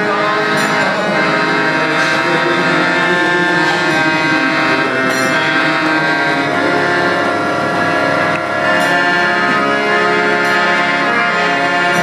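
Harmonium played in sustained reedy chords and melody, a steady, continuous sound accompanying a devotional song.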